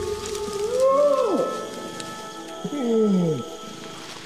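Long call of a flanged adult male Bornean orangutan: two drawn-out calls, the first rising then falling in pitch, the second sliding down. Steady background music runs underneath.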